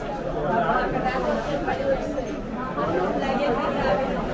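Several people talking at once, with overlapping voices and no single clear speaker.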